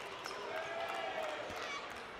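A basketball bouncing on a hardwood gym floor a few times, among the voices of an arena crowd.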